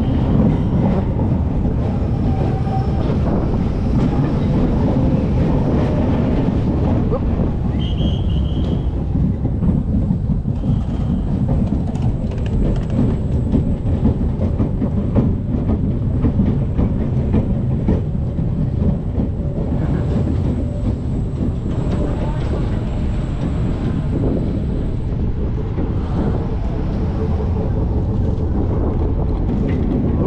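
SBF VISA spinning coaster car running along its steel track as it climbs towards the first drop, a steady low rumble heard from on board. A faint high-pitched whine sounds in the middle of the climb.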